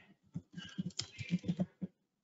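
Typing on a computer keyboard: a quick run of about a dozen keystrokes.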